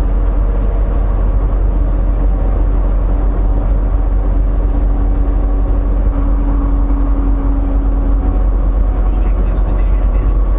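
Semi truck heard from inside the cab while cruising: a steady low diesel engine and road rumble with a faint droning tone.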